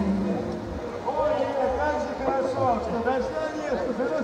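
Indistinct voices talking, with no clear words. A held musical note ends just after the start.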